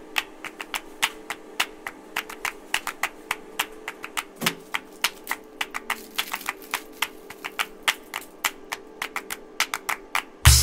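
Rapid, irregular sharp clicks and taps, several a second, like typing, over a faint steady low tone.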